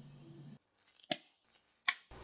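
A faint steady hum that cuts off about half a second in, then two short, sharp clicks about three-quarters of a second apart, the second one the louder.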